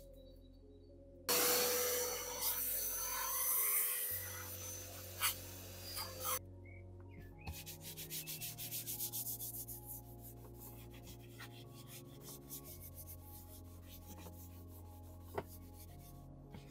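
A long hiss of cleaner being sprayed onto a black leather car seat, lasting about five seconds, followed by a detailing brush scrubbing the leather in rapid, repeated strokes.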